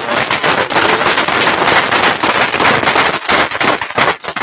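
A room full of people applauding, many hands clapping at once.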